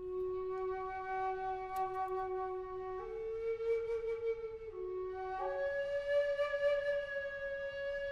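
Solo Native American flute playing a slow improvisation in long held notes. A low note sounds for about three seconds, then steps up, dips briefly back down, and rises to a higher note that is held steadily.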